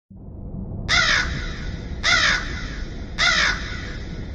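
A bird calling three times: short, harsh calls about a second apart, over a low rumbling drone.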